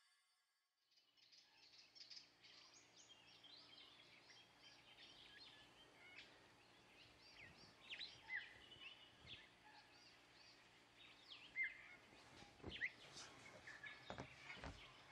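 Faint birdsong, with many small birds chirping and whistling, fading in about a second in after silence. A few louder calls stand out in the second half.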